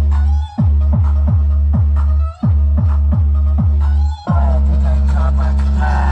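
Electronic music with heavy bass played loud through a homemade car-audio speaker box with a large woofer, midrange drivers and horn tweeters, driven by a Taramps amplifier. Deep falling bass hits come about twice a second, with three short gaps in the music, before the bass settles into a steady drone near the end.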